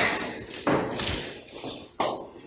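Rustling and scraping as a person gets up from a chair and picks up a handbag: a rough burst at the start and another about half a second in, each fading away.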